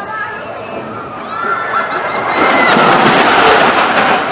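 Stealth, an Intamin hydraulic launch roller coaster, launching its train: held screams from about a second in, then a loud rushing noise from about two seconds in as the train accelerates down the launch track.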